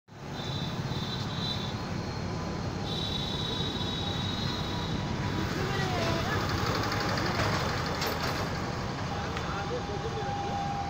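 Steady traffic rumble with indistinct voices in the background, the voices more noticeable in the second half.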